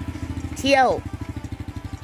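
Small step-through motorcycle engine running at low speed, a rapid, even pulse throughout.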